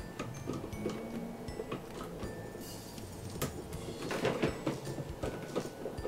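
Hard plastic toy parts being handled and fitted together: scattered light clicks and taps with faint rustling, as the pieces of a Barbie Galaxy Castle playset bed frame are joined.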